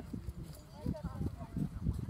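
Faint, distant voices of people talking or calling across an open field, with scattered low thumps on the microphone.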